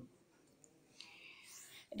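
Near silence, then from about halfway a faint hiss of a breath drawn in by the narrator just before speech starts again at the very end.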